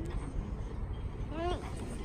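Infant in a car-seat carrier giving one short, rising whimper about one and a half seconds in, over a steady low rumble.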